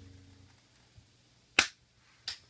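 The band's last held chord fades out, then after a short quiet a single sharp click sounds about one and a half seconds in, with a fainter tap just before it.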